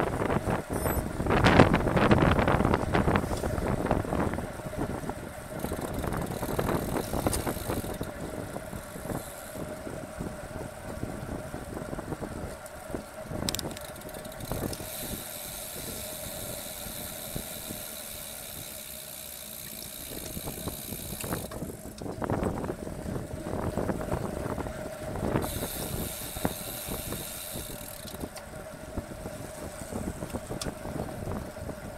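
Wind rushing over a bike-mounted camera's microphone, loudest in the first few seconds, with tyre and road noise from a road bike riding at about 30–35 km/h. A steady hum runs underneath.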